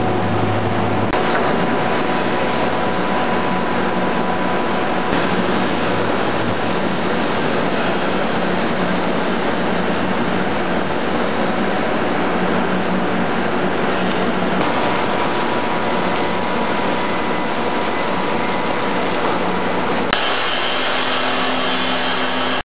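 Loud, continuous din of heavy factory machinery. About twenty seconds in, a different sound takes over: an abrasive cut-off saw grinding through steel pipe, with a steady motor hum.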